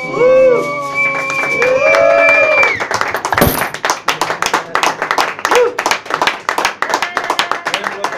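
The last held sung notes of a song over a nylon-string classical guitar, ending about three seconds in. A single sharp knock follows, then a small audience clapping.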